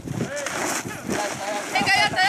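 Several voices shouting over one another during a tug-of-war pull, with high-pitched shouts in the second half.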